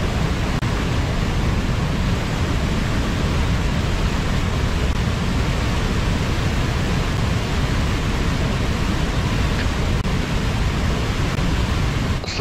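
Whitewater river rushing through a rocky gorge: a steady, even wash of water noise.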